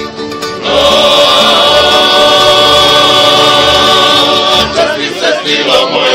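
A plucked-string folk band playing, joined about a second in by a group of voices singing one loud, long held note for about four seconds, after which the singing and playing move on.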